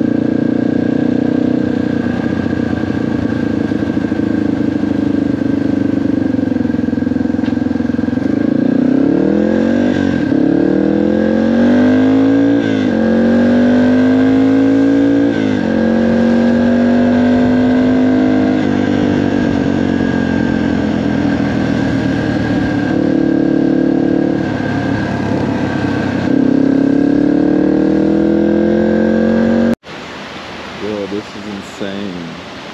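Dirt bike engine running on the move, pulling up through the gears several times, its pitch climbing and dropping with each shift, with steadier cruising in between.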